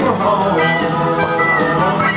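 Country-gospel backing music: an instrumental fill, a lead melody with sliding notes over steady accompaniment, played through a loudspeaker.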